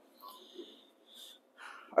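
A man breathing faintly through the nose close to a clip-on microphone, three short breathy puffs. The last is an intake just before he speaks again.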